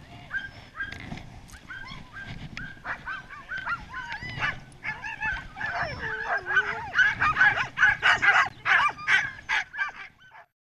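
Several harnessed Samoyed sled dogs yipping, whining and barking, typical of a team held at a stop and impatient to run. The calls overlap more and get louder over the last few seconds.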